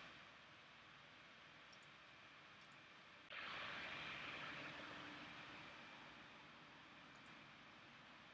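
Near silence: a low, even hiss. About three seconds in, a louder hiss starts abruptly and then fades away slowly over the next few seconds.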